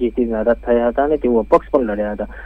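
Speech only: a news reporter's voice-over talking continuously, with a low steady hum beneath it.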